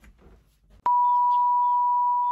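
A steady test-tone beep near 1 kHz, the tone that goes with a 'no signal' colour-bar screen. It starts abruptly with a click a little under a second in and holds one unchanging pitch.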